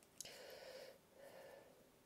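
A small click, then two faint breaths: a longer one, and a shorter one about a second in.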